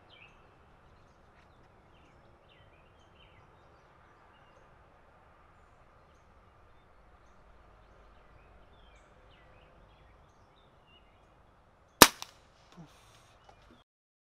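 A single shot from a .22 Brocock Atomic XR PCP air pistol, one short sharp crack near the end. Before it there is a long quiet stretch with faint birds chirping.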